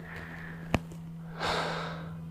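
A person's breathy exhale about one and a half seconds in, preceded by a single sharp click, over a steady low hum.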